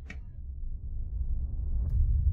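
Deep bass rumble from a music video's intro soundtrack, swelling steadily louder, with one faint click near the end.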